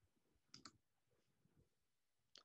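Near silence, broken by two faint quick clicks about half a second in.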